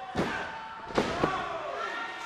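Referee's hand slapping the ring mat during a pin count: two sharp slaps about a second apart, then another thud, with crowd voices underneath. The count stops at two as the pinned wrestler kicks out.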